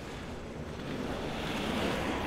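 Rushing outdoor noise with no pitch, like wind or surf, growing louder through the second half.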